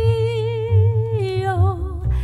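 A woman singing a slow Japanese song in a sustained, vibrato-laden voice, the held note easing downward near the end of the phrase. Underneath, a plucked upright double bass plays low notes.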